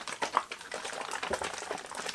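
A one-litre carton of pea drink being shaken by hand, the liquid sloshing inside in a quick, irregular run.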